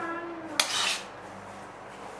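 A ladle clinking and scraping against a ceramic bowl as zhajiang sauce is spooned over noodles. There is one sharp clink a little over half a second in.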